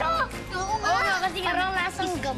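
Children's high-pitched voices reacting and exclaiming over background music.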